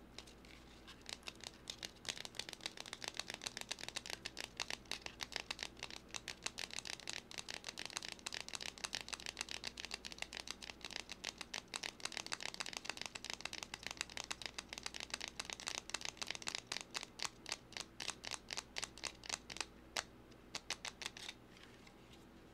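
Rapid fingertip and fingernail tapping close to the microphone, a quick run of sharp taps that starts about a second in and stops just before the end.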